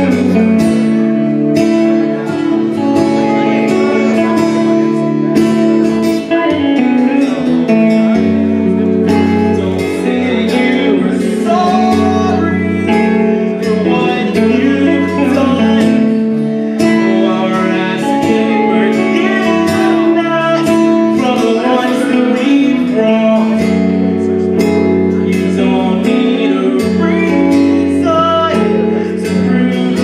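A rock band playing live: guitars over a steady bass line.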